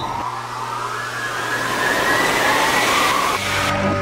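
A hissing sweep whose pitch climbs steadily for about three seconds, then music with plucked strings comes in near the end.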